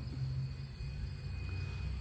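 Outdoor background: a steady low rumble with a faint, steady high-pitched tone that fades just before the end.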